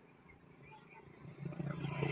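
Faint street background with no clear single event, growing louder with a low hum in the last half second.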